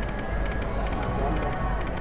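Busy casino floor ambience: steady background crowd chatter mixed with electronic slot-machine sounds while a video slot's reels spin and stop.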